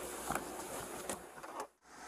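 Faint rustling with a few soft clicks, then the sound cuts out completely for a moment near the end.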